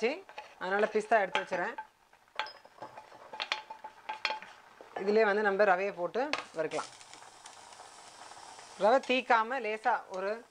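A wooden spoon clacks and scrapes against a frying pan in a few scattered knocks while cashews and raisins are stirred. Later a steady sizzle runs for about two seconds as something is added to a hot pan. A woman talks in between.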